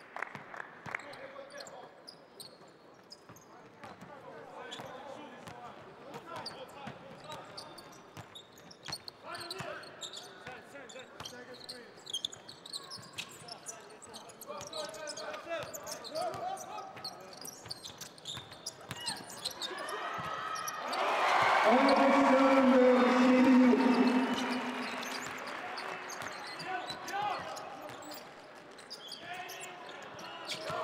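Basketball game sound in a large arena: a ball bouncing and sharp court noises among scattered voices. About twenty seconds in, the crowd cheers loudly for a few seconds as the home side scores a basket, then the cheer fades.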